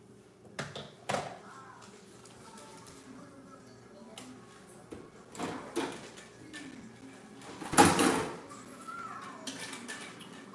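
Kitchen handling noises from rinsing something out: a few scattered knocks and clunks, the loudest a short burst about eight seconds in.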